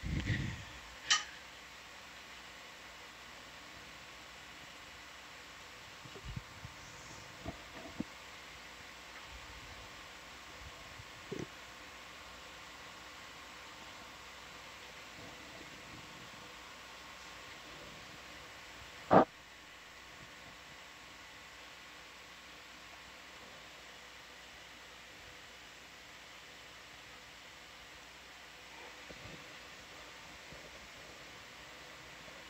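Steady low hiss with faint humming tones, the background of an open control-room intercom feed, broken by a few sharp clicks: one about a second in, several small ones in the middle, and a louder one about two-thirds of the way through.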